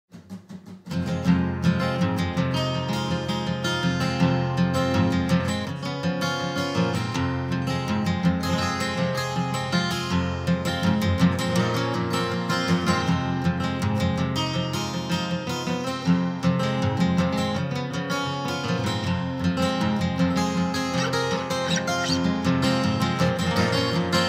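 Instrumental folk music led by acoustic guitar, coming in fully about a second in and playing continuously.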